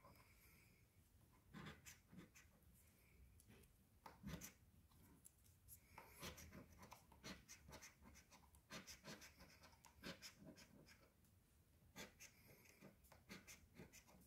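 A coin scratching the coating off a lottery scratch-off ticket in short, faint, irregular strokes.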